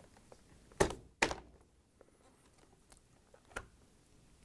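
Two sharp knocks about half a second apart, a second in, and a faint click near the end: the refrigerator's flapper door assembly being pushed up so its hinges come free of the French door.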